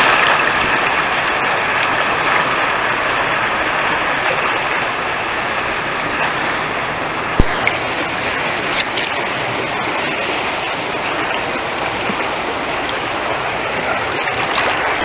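Water rushing and splashing steadily around the rider in a water slide's splash pool. A sharp knock comes about halfway through, and after it the water sound turns brighter.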